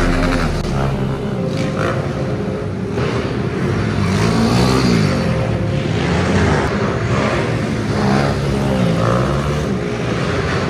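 Small four-stroke pit bike engines revving as riders go around the track, the engine note climbing and dropping several times as the throttle is opened and closed.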